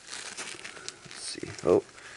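Folded paper napkin crinkling as it is handled and refolded close to the microphone, with a short burst of voice about a second and a half in, the loudest moment.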